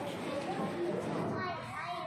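Children's voices: young children talking and chattering.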